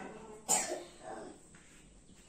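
A person coughing once, sharply, about half a second in.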